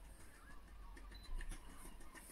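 Quiet room tone with a brief faint high beep and a soft knock about a second and a half in, as the air fryer's touch panel switches on.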